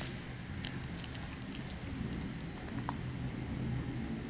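Steady hiss of background room noise with a low hum, broken by a few faint clicks.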